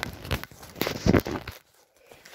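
Fingers rubbing and brushing over a handheld phone close to its microphone: irregular scratchy rustles and clicks that stop about three-quarters of the way through.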